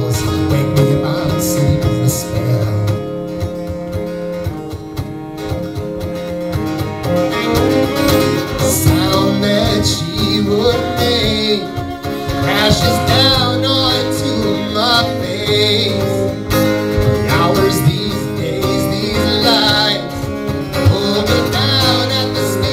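Acoustic guitar strumming and a bowed cello playing an instrumental passage of a folk-rock song, heard live, with a wavering melody line coming in about a third of the way through.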